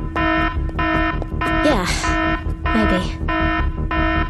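Electronic alarm beeping in a steady rhythm, a little under two beeps a second: an alert heralding a newly detected dimensional rip.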